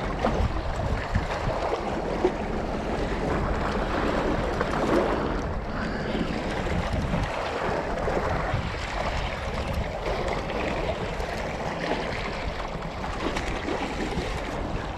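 Wind on the microphone and small waves washing against a rocky shore, with a spinning reel being wound against a hooked fish.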